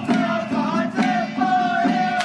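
A group of men chanting in unison, holding long notes, over sharp strokes on hand-held drums about twice a second. It is the chant of a Taoist xiaofa ritual troupe in a temple procession.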